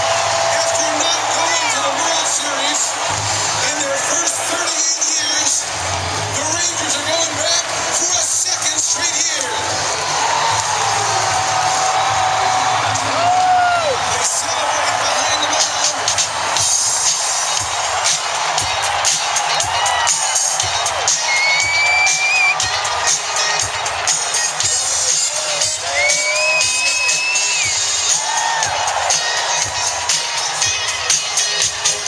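Large stadium crowd cheering and shouting, with loud music playing over it; a steady low beat becomes clearer in the second half.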